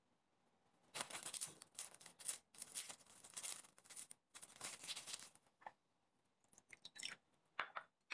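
Lemon half twisted and pressed on a plastic hand citrus juicer, making faint, repeated rough scraping strokes, with a short pause about six seconds in.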